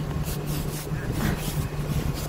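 Moving truck's engine idling with a steady low hum, with a few short scraping strokes of an ice scraper on a frosted windshield.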